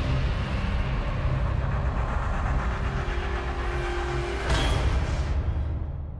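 Sound-effect sting for an animated logo intro: a deep rumbling noise with a hiss on top, swelling briefly about four and a half seconds in, then fading away near the end.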